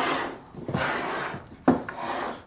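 Close handling noise: two long rubbing, scraping strokes, then a sharp click near the end, as an arm and hand work right beside the microphone while speaker wire is being connected to the amplifier.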